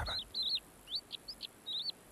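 Bird chirping: a scattered series of short, high chirps, some in quick pairs, through a pause in the narration.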